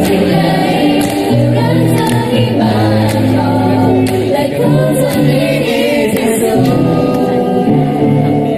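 A group of young men and women singing a slow, sentimental Thai song together, holding long notes.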